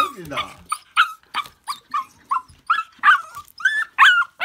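Laika puppy yelping and whining in short high-pitched cries, about three a second, as it tries to climb onto the bed.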